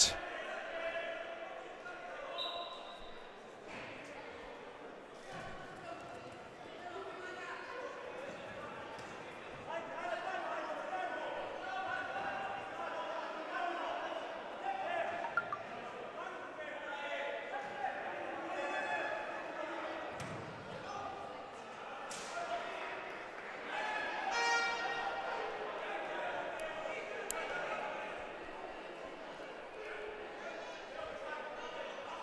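Indoor arena ambience during a five/six-a-side football match: indistinct shouts from players and spectators echoing in the hall, with occasional thuds of the ball being kicked, a sharper one about 22 seconds in and another near the end.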